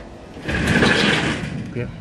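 Steel garden shed's sliding door being slid along its rail, a scraping rumble lasting about a second. A short spoken word follows near the end.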